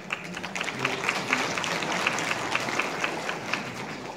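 Audience applauding: a dense run of handclaps that swells and then thins out near the end.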